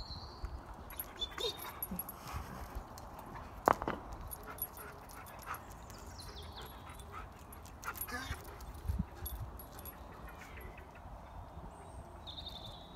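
A dog's short yips and whimpers, in scattered bursts, the loudest about four seconds in and another cluster around eight to nine seconds, with birds chirping faintly now and then.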